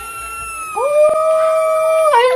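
Cat yowling in one long, steady, drawn-out cry, with a second, lower held cry coming in about a second in.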